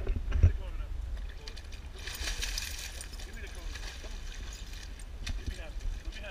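Lake water splashing as a pit bull wades through the shallows, strongest for a second or so around the middle, over a steady low wind rumble on the action-camera microphone. A couple of sharp knocks sound right at the start.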